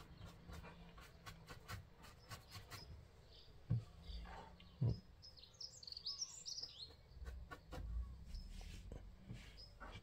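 Faint scratchy ticking of a dry paintbrush flicked over rough, textured model scenery, with two soft knocks a few seconds in. A bird chirps briefly in a quick run of high notes near the middle.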